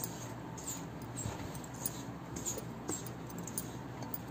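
Hands mixing dry flour in a steel bowl: a soft rubbing with faint, scattered clicks and clinks of bangles and rings.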